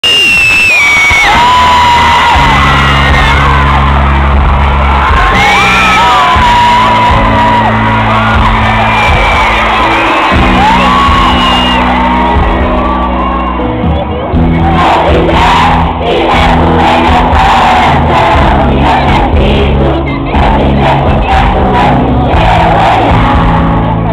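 Live pop concert music heard loud from inside the audience. Held bass chords play under fans' high screams, then a steady beat comes in about 14 seconds in, with singing.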